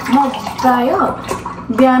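Milk poured from a carton into a mug, a steady stream of liquid filling the cup, with a woman's voice over it.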